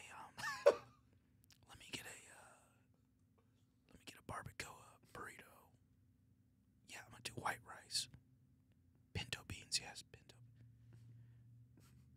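A man whispering in short bursts with pauses between, mimicking hushed customers ordering food.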